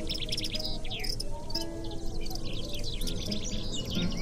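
Birds singing, a dense run of quick chirps and short sweeps, over soft guitar music with a few held notes.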